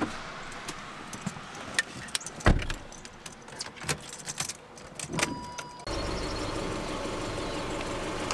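Inside a Fiat 500, the door shuts with a thump and car keys jingle and click at the ignition. About six seconds in, the engine starts and settles into a steady idle.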